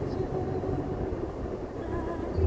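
Steady road and engine rumble heard inside a moving car's cabin.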